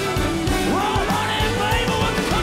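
Live band playing a roots-rock song: a steady drum beat under acoustic and electric guitars, with a pitched lead line that slides up partway through.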